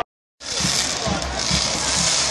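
Dense stadium noise, a crowd together with the steady hiss of pyrotechnic spark fountains on the field. It starts abruptly after a moment of silence.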